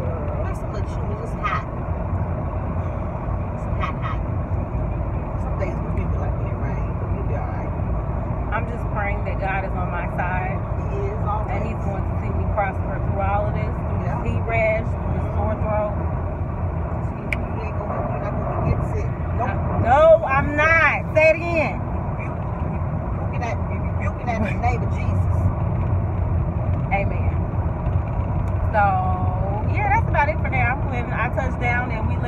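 Steady low rumble of road and engine noise inside a moving car's cabin, with quiet voices now and then, loudest about twenty seconds in.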